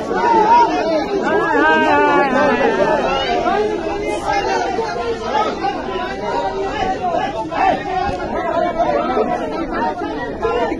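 A crowd of people talking and shouting over one another, many loud voices overlapping at once: a heated argument in a protesting crowd.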